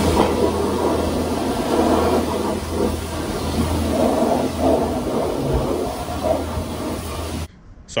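Car-wash high-pressure wand spraying water against a truck's frame and wheel well to wash off grease and oil: a steady hiss and spatter over a low hum. It cuts off suddenly near the end.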